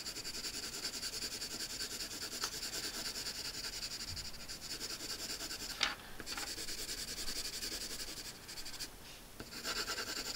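Colour pencil shading on paper in quick, rapid back-and-forth strokes, a steady scratchy rub. It breaks off briefly with a small tap about six seconds in, then resumes, easing off for a moment near the end.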